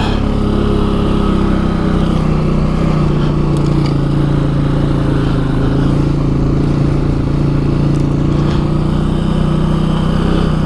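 Can-Am Outlander 700 ATV's single-cylinder engine running steadily under the rider as the quad moves along a trail.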